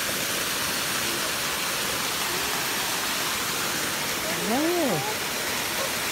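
Steady rush of creek water flowing over rocks. Near the end a brief voice sound rises and falls in pitch.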